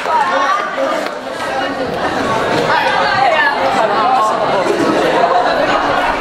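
Overlapping chatter of a small crowd of teenagers, many voices talking at once with no single clear speaker, in a large echoing hall.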